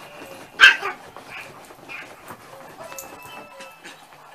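A dog barks once, short and sharp, a little over half a second in. Quieter small knocks and scuffles follow.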